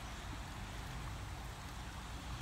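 Steady sound of running water at a small backyard garden pond, over a low steady rumble.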